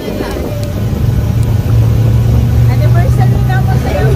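Engine of the vehicle carrying the riders, running with a steady low drone that grows louder about a second and a half in.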